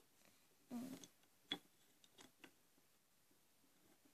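Near silence: quiet room tone with a brief soft rustle about a second in, followed by a sharp faint click and a few fainter clicks.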